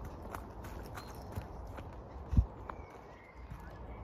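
Footsteps on a dirt woodland path, a string of soft crunching steps, with one loud low thump a little past halfway.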